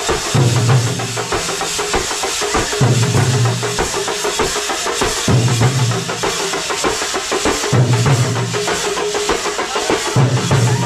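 Live thambolam band: many large drums and snare drums beaten in a fast, driving rhythm, with a melody over it and a low held note that comes back about every two and a half seconds.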